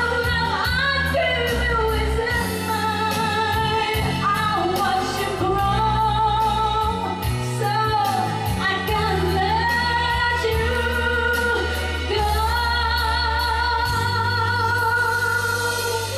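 A woman singing a ballad into a microphone over an instrumental accompaniment, holding long notes with vibrato above a slow, changing bass line.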